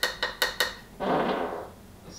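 A quick, even run of sharp metallic-sounding clicks, about five a second, each with a short ring; it stops about two-thirds of a second in. About a second in comes a brief burst of noise lasting under a second.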